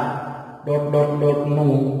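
A man's voice in long, drawn-out syllables held on a fairly steady pitch, with a brief break about half a second in.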